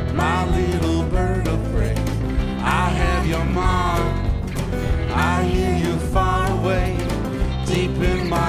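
Live rock band playing an instrumental passage between sung lines: strummed acoustic guitar, electric bass and drums under a sliding steel-guitar lead that glides between notes.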